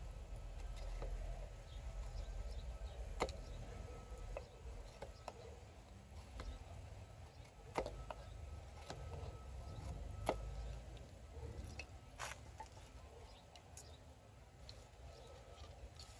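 Faint knife work in wood: a PKS Kephart XL carbon-steel bushcraft knife cutting a notch into a stick, with scattered sharp ticks as the blade bites in, over a low steady rumble.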